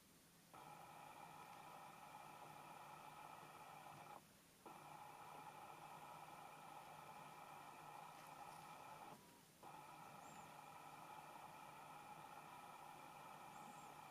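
Near silence: a faint steady hum that breaks off briefly twice.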